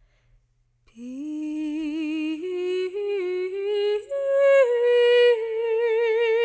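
A woman's voice sings a wordless, unaccompanied melody from about a second in. It climbs step by step and settles on a long held note with vibrato.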